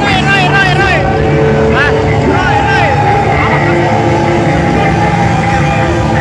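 Loud live rock band heard through a phone microphone: wavering held notes with wide vibrato over a sustained, droning distorted chord.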